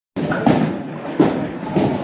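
Bowling alley din: a steady rolling, clattering rumble, with two sharper knocks about half a second and a second and a quarter in.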